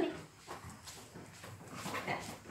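A dog making a few short, faint sounds spread over the two seconds.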